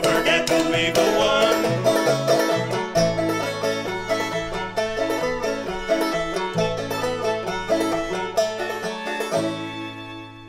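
Old-time string band playing an instrumental passage on open-back banjo, fiddle and upright bass, with no singing. The music gets quieter over the last several seconds and closes on a final chord near the end that is left ringing.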